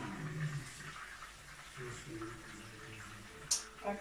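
Cutlets frying in a pan on the stove with a light sizzle, under a faint low voice in the background, and one sharp click near the end.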